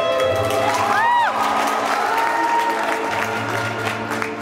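Recorded classical string music playing in an ice rink, with audience applause and a spectator's rising-and-falling whoop about a second in.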